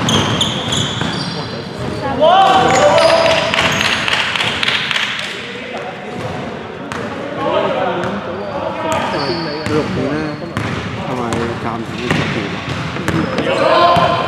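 A basketball bouncing on a hardwood court during a game, with players' shouts and calls around it, in a large echoing sports hall.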